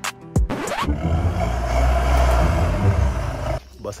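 Loud rushing wind buffeting a microphone held out of a moving bus window, with deep rumble from the bus, after a second of music. It cuts off suddenly near the end.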